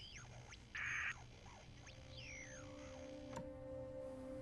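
Faint radio interference: thin whistling tones gliding up and down, with a short burst of static about a second in. A steady low drone of background music sets in about halfway.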